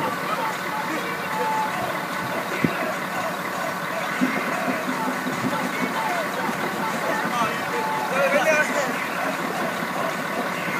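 Several young people's voices talking over one another, with a steady low hum beneath, typical of a coach engine idling.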